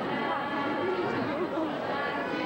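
Crowd chatter: many people talking at once at a steady level, with no single voice standing out.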